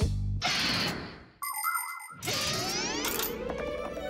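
Cartoon sound effects over background music: a fading whoosh, then a short bright chime about a second and a half in, followed by sliding glides in pitch.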